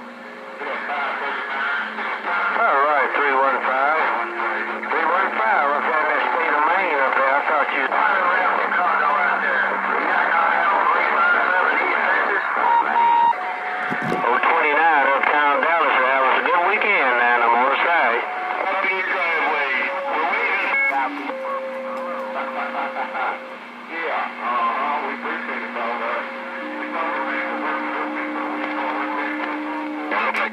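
Several distant stations talking over one another through a CB radio's speaker, the voices garbled and warbling, with steady heterodyne whistles underneath. A single sharp crack of static comes about halfway through.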